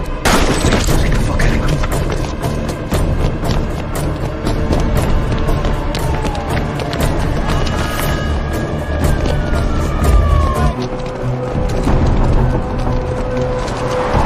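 Dramatic soundtrack music with heavy booms and many sharp hits throughout, the strongest hit right at the start.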